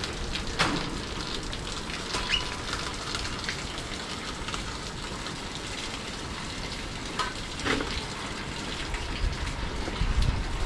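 Steady rain falling, an even hiss of water, with a few light clicks: once near the start and twice about seven seconds in.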